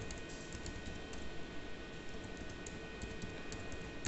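Keys on an ultrasound machine's keyboard being typed in a quick, uneven run of light clicks as a text label is entered on the scan image. A faint steady high tone hums underneath.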